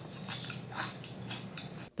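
A person chewing and crunching potato chips with the mouth close to the microphone, a crisp crunch about every half second.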